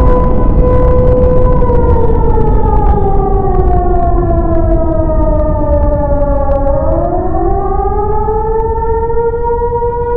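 Civil defense siren sounding an attack warning. It holds one steady tone, slides slowly down in pitch for about five seconds, then climbs back up near the end, over a heavy low rumble.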